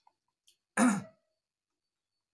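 A man clears his throat once, a short loud rasp a little under a second in, close into a handheld microphone.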